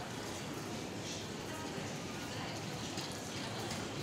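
Steady background din of a large supermarket hall, even and without distinct events.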